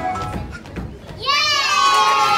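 A backing song ends, and a little over a second later a young child lets out a loud, very high-pitched squeal that falls in pitch.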